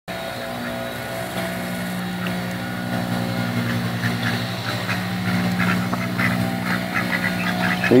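A golf cart's engine humming steadily at idle, with short soft quacks from mallard ducks coming more often in the second half.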